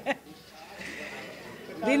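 A woman's laughter trailing off at the start, then a soft breathy lull before she speaks again near the end.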